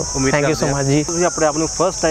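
A man talking, over a steady high-pitched drone of insects such as crickets or cicadas.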